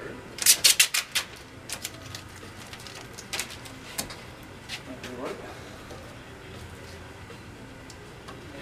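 Snap-off utility knife clicked in a quick run of about six sharp clicks, then a few scattered single clicks over the next few seconds while vinyl wrap is trimmed.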